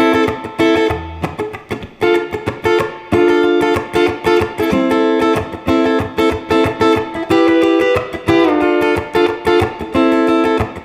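Electric guitar playing a funk rhythm: fast, choppy 16th-note strumming, with short chord stabs between muted scratches.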